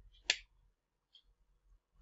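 A single short, sharp click about a third of a second in, then near silence.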